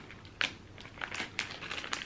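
Plastic candy packet of Hi-Chew Minis crinkling in the hands as it is handled, in short irregular crackles.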